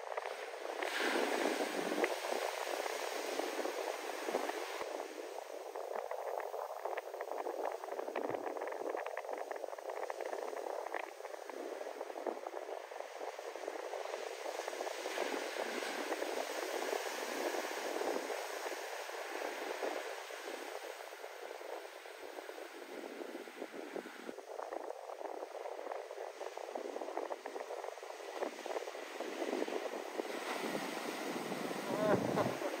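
Heavy shorebreak waves breaking and surf washing up the beach: a steady, noisy rush that swells and ebbs, loudest about one to four seconds in.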